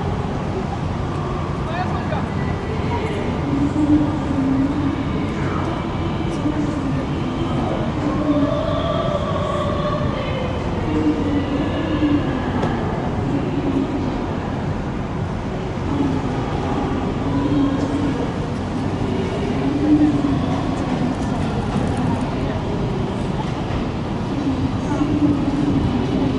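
Steady low rumble of marine diesel engines from tugboats working close by, with people's voices talking over it.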